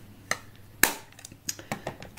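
Makeup compacts and cases being handled: a few sharp clicks and knocks, the loudest a little under a second in, followed by several lighter taps.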